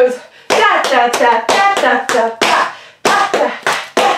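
Tap shoes striking a hard floor in a quick stamp, pick-up, step sequence: a run of sharp metal taps, about three a second, with a short break about three quarters of the way through.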